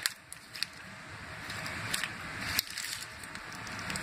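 A vehicle wiring harness being handled, its loom and plastic connectors rustling, with a few light clicks.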